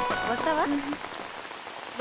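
Steady rain falling, an even hiss, with a brief voice-like sound about half a second in.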